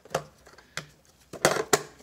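A few sharp clicks and clatters of small Dremel bits and their plastic accessory case being handled, the loudest two about a second and a half in.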